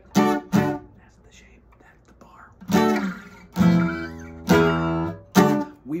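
Steel-string acoustic guitar strummed, playing a D-major chord shape moved high up the neck: two quick chords, a pause of about two seconds, then four more chords, two of them left to ring.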